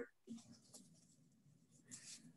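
Near silence on a videoconference line, with a couple of faint, brief rustles in the first second.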